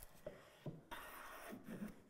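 Faint rubbing and a few light clicks of a metal hand plane being handled.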